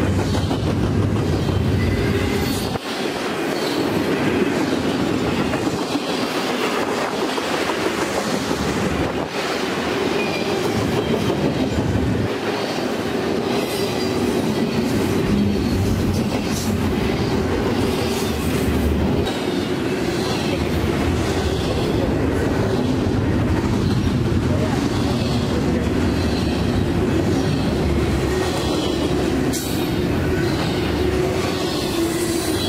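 Double-stack intermodal container train rolling past close by: a steady rumble and rattle from the well cars, with repeated clicks of the wheels over the rail joints.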